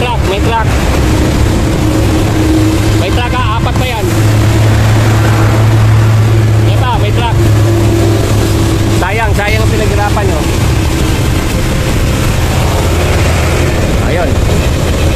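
Heavy dump truck's diesel engine running close by, a steady low hum loudest in the middle, over a constant rush of wind on the microphone.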